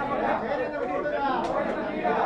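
Several people talking over one another: overlapping chatter of voices with no single clear speaker.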